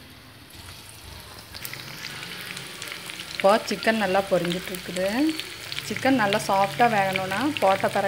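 Chicken pieces coated in chilli-cornflour batter deep-frying in hot oil, a steady sizzle and crackle that grows louder in the first seconds as more pieces are in the oil. From about three and a half seconds in, a voice speaks over the frying.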